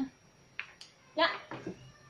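A woman says a single short word about a second in, after a couple of faint clicks; the rest is a quiet room.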